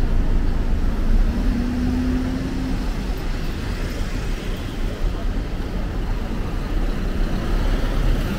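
Road traffic passing close by: engines running with a steady low rumble and tyre noise as a car and a light goods truck drive past. A brief steady hum sounds about a second and a half in.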